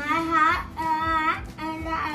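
A young girl's voice, garbled by a cheek-retractor mouthpiece, drawing out three long sing-song syllables as she tries to say the phrase for the others to guess.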